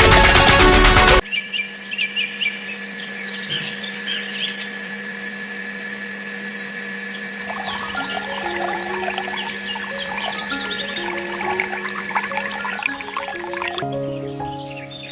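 Music cuts off about a second in, leaving a small DC electric motor belt-driving a miniature water pump with a steady hum, and water pouring from the pump's outlet pipe into a channel. Short chirps sound throughout, and soft music comes back in the second half.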